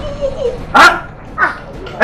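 A boy's two short yelps of pain, falling in pitch: a loud one just before a second in and a fainter one about half a second later, after the tail of a whining plea.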